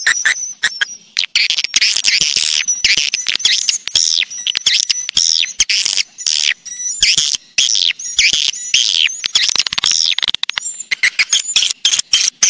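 Swiftlet lure-call recording (suara panggil walet): a dense, rapid stream of high twittering chirps and clicks from swiftlets. It is the kind of call track played in swiftlet houses to draw the birds in to roost and nest.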